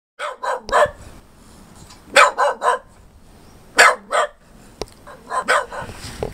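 A dog barking in quick runs of two or three barks, with pauses of about a second between the runs. The last barks are fainter.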